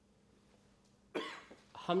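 About a second of near silence, then a single short cough from a man into a microphone about halfway through.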